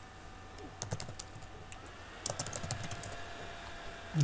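Typing on a computer keyboard: a few keystrokes about a second in, then a quicker run of keys a little past halfway, entering a short web search.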